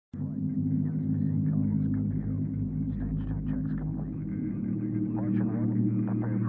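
Steady low hum that cuts in abruptly just after the start, with faint, muffled voices under it that cannot be made out. The voices grow a little clearer near the end.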